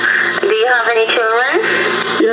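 Speech from a recorded prank phone call playing back, over a steady low hum.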